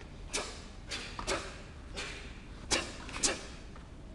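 Taekwon-do uniform snapping with each punch and kick of a pattern, mixed with feet landing on foam mats: about six short, sharp swishes and cracks at irregular spacing, the loudest two close together near the end.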